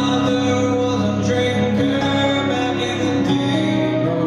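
Live acoustic music: an acoustic guitar with a lap-played resonator slide guitar, whose sustained notes glide smoothly in pitch several times.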